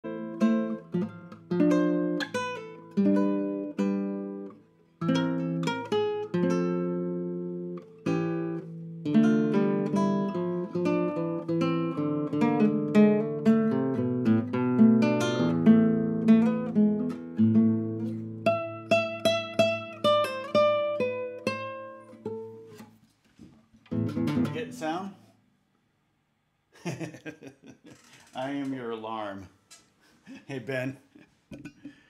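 Acoustic guitar played solo, picked single notes and ringing chords for over twenty seconds before it stops; a man's voice follows briefly near the end.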